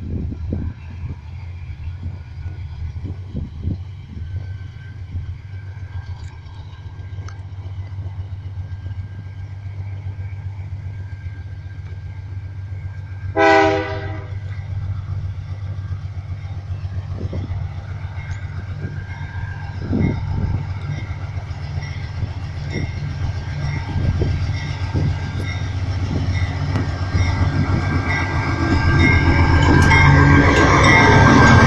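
A GE C44-EMi diesel-electric freight locomotive approaching, its engine drone growing steadily louder as it nears. About halfway through it gives one short horn blast, the loudest sound here.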